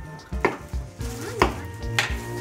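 Table knives knocking and scraping on plates and bread as sandwiches are cut and spread, with a couple of sharp knocks, over background music with a steady beat.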